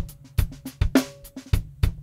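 Acoustic drum kit playing a steady groove of kick drum, snare and hi-hat, heard as the raw, unmixed multitrack recording before any mixing.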